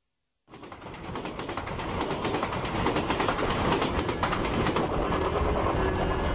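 The opening of an indie rock track: a dense, crackling, clattering noise fades in about half a second in and grows louder over the next couple of seconds. Low held notes come in near the end as the music proper begins.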